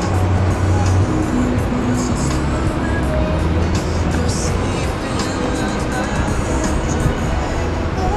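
Background music playing in a busy open-air plaza, over a steady low rumble and the murmur of people's voices.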